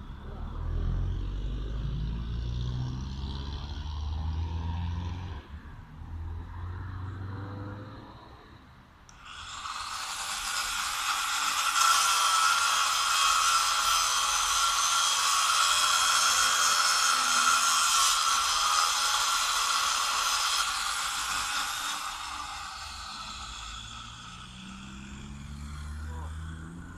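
An angle grinder cuts into a metal lamp post: a loud, steady, high-pitched cutting whine starts about nine seconds in, holds for some twelve seconds, then winds down. Before it, the low rumble of a car engine.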